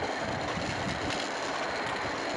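Wheels of a hand-pushed rail trolley rolling along the railway track: a steady rolling noise with irregular low knocks.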